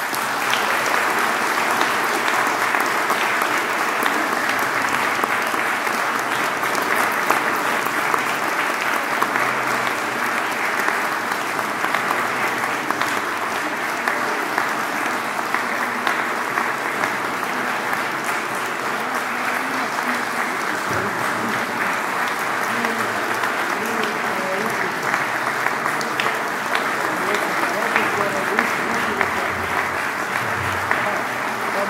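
Audience applauding steadily: dense, even clapping.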